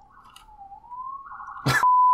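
An emergency-vehicle siren wailing faintly in the background, its pitch gliding down and back up. Near the end a sharp click leads into a loud, steady beep: a TV colour-bar test tone.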